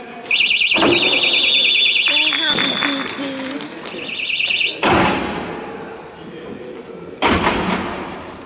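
A referee's pea whistle blown in two loud trilling blasts, signalling a stoppage in play before a face-off. Voices call out between the blasts, and two loud bangs follow, at about five and seven seconds.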